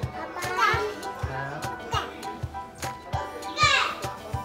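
Background music with a steady beat, with a child's high voice calling out briefly twice.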